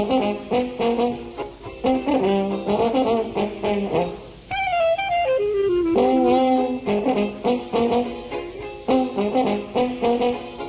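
Traditional jazz band playing from an old radio broadcast tape: trumpet, trombone, clarinet, piano, banjo, tuba and drums. About halfway through, a single horn line slides down in pitch for about a second and a half, then the full ensemble comes back in.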